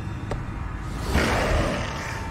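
Horror sound design: a low rumbling drone with a rushing swell of noise about a second in.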